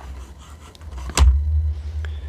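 A single sharp click with a low thump about a second in, as a glass LED candle is set down onto its magnetic charging base, with low handling rumble around it.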